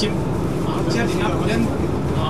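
A man's voice speaking in short phrases over a steady low rumble.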